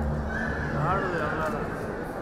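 A person's voice: a high, wavering vocal sound that falls in pitch and lasts about a second.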